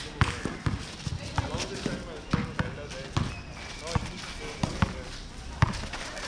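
Basketball being dribbled on an outdoor concrete court, a series of sharp bounces at an uneven pace of about two a second as the player handles the ball against a defender.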